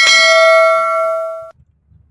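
Notification-bell sound effect from a subscribe-button animation: one bell chime, struck as the bell icon is clicked, ringing with several steady tones and cutting off suddenly about a second and a half in.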